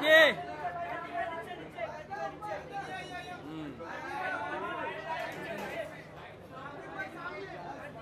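Several people talking over one another in a crowd, with a loud shout right at the start.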